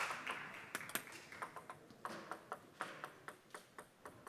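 Spectator applause dying away as a table tennis ball is bounced between points, giving sharp light clicks about four times a second that grow fainter.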